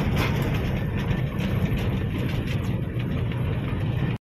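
Heavy truck's diesel engine running steadily with road noise while driving, heard from inside the cab as a low rumble.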